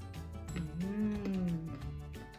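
Background music with a steady beat. About half a second in, a low, drawn-out voice-like hum rises and then falls in pitch over about a second, louder than the music.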